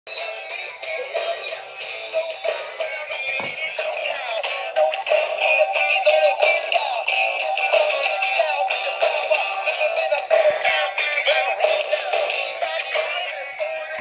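Music with singing coming from a radio through the earpiece speaker of a rotary dial telephone handset converted into a radio. It sounds thin, with no bass.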